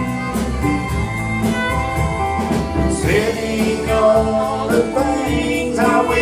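A live country band playing a slow song, with fiddle, guitars and drums, and a man's lead vocal over them.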